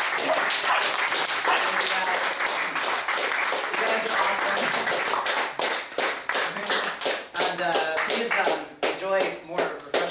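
A few people clapping by hand in a small room, with voices over the claps; the claps thin out in the second half.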